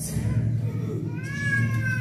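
A high, drawn-out wailing cry that starts about a second in, rises in pitch and then holds, over steady low background music.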